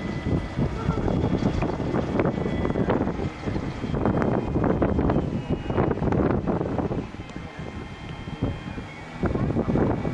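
Wind buffeting the microphone in gusts, over the faint steady drone of a radio-controlled model aircraft's engine flying overhead; the buffeting eases for a couple of seconds about seven seconds in.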